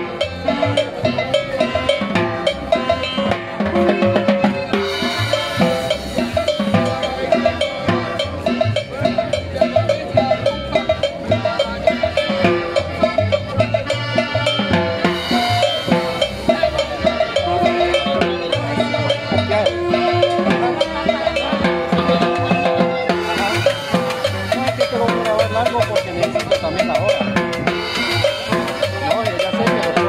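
Live Latin dance music from a street percussion band: timbales and drums with a cowbell keep a steady, driving beat under a melodic line, playing without a break.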